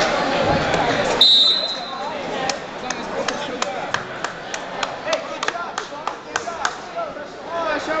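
A referee's whistle blows one short, steady, shrill blast just over a second in, ending the wrestling match on a pin. Then single hand claps come about three times a second, with voices at the start.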